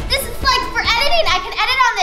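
A girl's voice, very high-pitched and excited, exclaiming without clear words, over faint background music.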